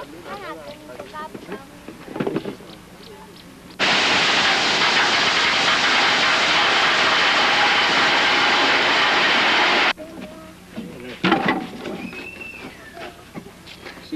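Gravel pouring off the tipped bed of a dump truck: a loud, even rush of sliding stones that starts and stops suddenly, lasting about six seconds.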